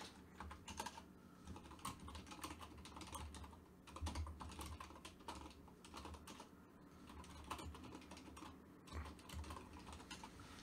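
Faint typing on a computer keyboard: irregular runs of keystroke clicks.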